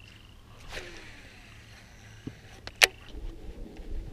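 Quiet handling of a fishing rod and reel over calm lake ambience, with a few small clicks and one sharp click about three seconds in.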